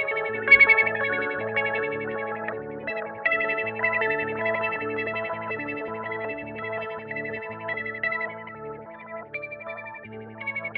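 Electric guitar (a custom-built Jazzmaster) played through a Mu-Tron III / Lovetone Meatball-style envelope filter pedal into a Yamaha THR10 amp, with an EHX Memory Boy analog delay in the effects loop. Chords and picked notes ring into one another, with the strongest attack about half a second in and the playing thinning out near the end.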